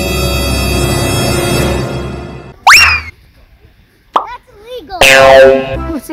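Edited-in background music that fades out about two seconds in, followed by short cartoon-style sound effects. A loud rising swoop comes near the middle, then a wavering tone, then a loud falling sweep near the end.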